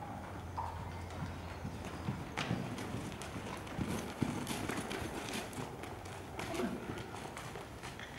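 Horse's hooves at a walk on soft indoor-arena footing, a muffled, uneven series of footfalls that grows louder as the horse passes close by in the middle and then fades.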